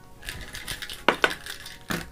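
Plastic marker pens dropped onto a sheet of paper on a tabletop, clattering with a few sharp clicks.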